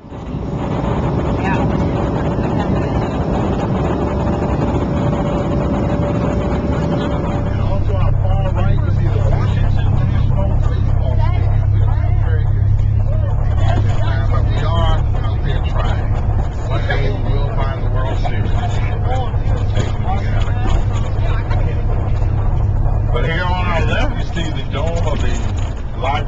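Steady cabin noise of an airliner in flight, with a faint steady whine over it. About a third of the way in it gives way to the steady low drone of a bus engine heard from inside the bus, with people talking indistinctly over it.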